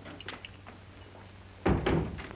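A door slammed shut about three-quarters of the way in, one loud bang with a short ring after it, preceded by a few light footsteps. A steady low hum of an old film soundtrack runs underneath.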